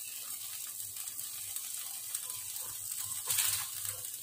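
Marinated meat sizzling on the wire rack of an electric grill over glowing heating elements, a steady hiss with a brief louder burst about three seconds in.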